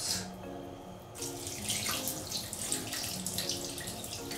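Water poured from a plastic bath scoop over a kitten's back, splashing down steadily from about a second in.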